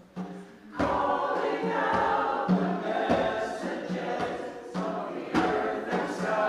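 A mixed choir of men's and women's voices singing together; after a brief pause just at the start, the singing comes back in under a second in and carries on.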